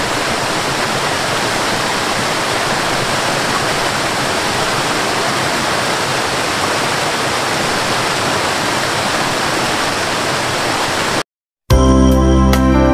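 Steady rush of a waterfall, cutting off suddenly near the end. After a short gap, organ-like keyboard music starts loudly.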